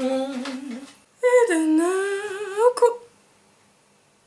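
A woman singing a short phrase: a low held note for about a second, then after a brief gap a longer line that dips and rises in pitch, stopping about three seconds in.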